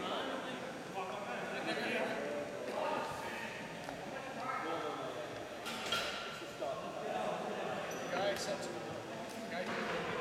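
Indistinct overlapping voices of players talking in a gymnasium, echoing off the hall. A few sharp knocks stand out, about six and eight seconds in.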